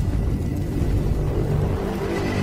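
Intro sound-effect rumble: a deep, steady low rumble with faint held tones over it, the sustained tail of a cinematic logo hit.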